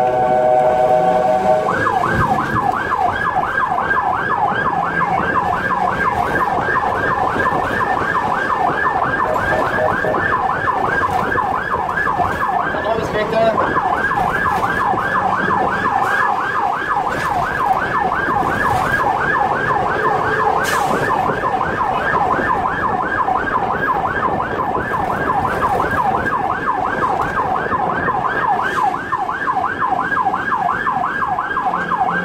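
An ambulance's electronic siren in fast yelp mode, wailing up and down about five times a second, heard from inside the ambulance's cab. For about the first second and a half the yelp gives way to a steady blaring tone, and it breaks briefly about halfway through.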